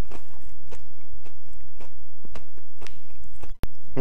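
A person chewing and biting crispy fried chicken with crunchy kremes crumbs, eaten by hand, with scattered small crunches. The sound cuts out briefly near the end.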